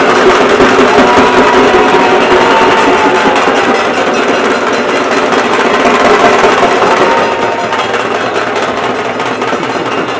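Loud, dense festival din of drumming and a crowd of voices. A long note slides slightly down from about a second in, and the whole mix eases off a little over the last few seconds.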